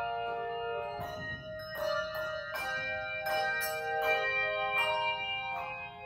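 Handbell choir playing: chords of handbells rung together every half second to a second, each chord left ringing into the next.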